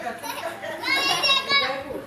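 Young children's voices at play, with one long, high-pitched shout starting a little under a second in.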